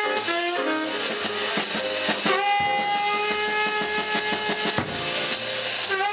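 Live jazz combo: a tenor saxophone playing a solo line over piano, upright bass and drums, with one long held note through the middle.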